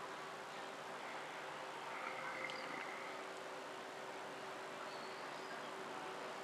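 Faint outdoor background: a steady low hum under a light hiss, with a few faint distant bird calls about two seconds in and again near five seconds.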